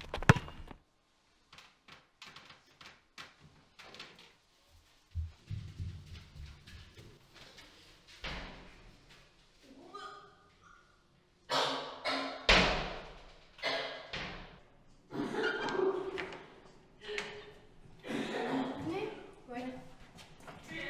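Scattered thuds and knocks, a door being banged among them, with indistinct voices; the loudest hits come about halfway through.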